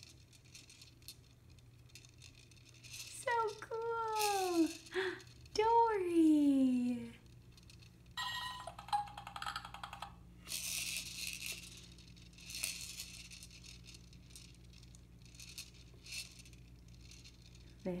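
Plastic toys on a baby's activity jumper rattling in repeated short bursts as she handles them, among them the clear clownfish dome on the tray, mostly from about eight seconds on. Before that come a few long vocal sounds falling in pitch.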